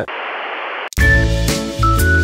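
A burst of television-style static hiss lasting just under a second, cut off abruptly, followed by background music with a bass beat.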